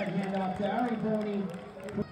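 A man's voice speaking or calling out, with some crowd noise behind it, easing off shortly before the end.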